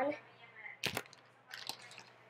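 Small plastic toy dragon parts being handled while its wings are fitted. One sharp click comes about a second in, followed by a few lighter clicks.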